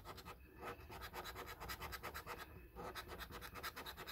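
Scratchcard's silver latex coating being scratched off in rapid, even strokes, several a second, uncovering the number panels.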